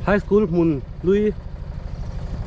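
A person's voice calling out in short, drawn-out, sung-like phrases during the first second or so, over an engine running steadily in the background with an even low pulse.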